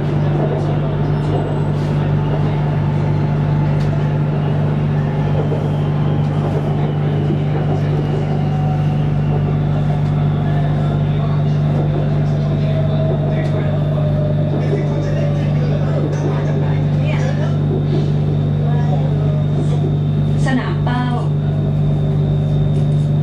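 Running noise inside a BTS Skytrain carriage on the move: a steady low hum and wheel-and-track rumble, with a faint motor whine that slowly falls in pitch partway through.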